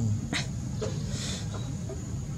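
Baby macaque giving a few short, sharp high squeaks between its crying calls.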